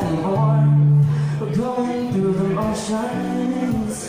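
A man singing live to his own acoustic guitar, with a long held low note from about half a second in that lasts about a second, then the sung line moving on.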